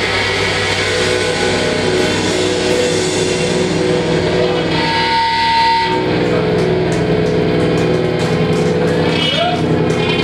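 Live metal band's amplified electric guitars and bass ringing out in a loud, sustained drone of held notes. A higher steady tone cuts in briefly around the middle.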